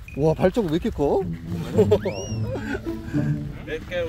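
A big cat's roar, wavering in pitch for about a second, likely a sound effect laid over a large jaguar-like paw print. About two seconds in comes a short whistle that rises sharply and then falls.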